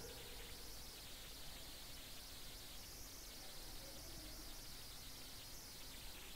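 Faint steady hiss with a low hum: background noise with no distinct sound events.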